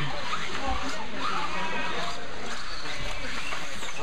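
Steady din of an indoor RC dirt track: electric stock 2WD buggies running, their motor whine rising and falling faintly, over a background of distant voices.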